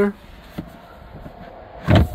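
GMC Terrain's hard carpeted cargo floor panel being lifted and handled: a faint click about half a second in, then a short, loud knock near the end.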